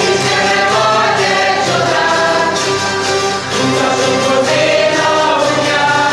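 A Hungarian zither (citera) ensemble strumming steady chords while a group sings a song in unison over it.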